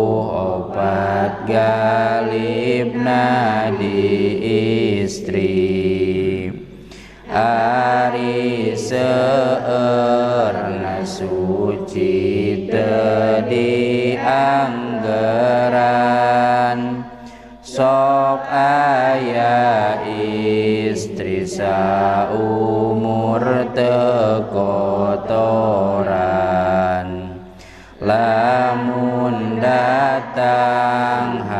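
A man's voice chanting in long, melodic held phrases with a wavering pitch, pausing for breath about every ten seconds.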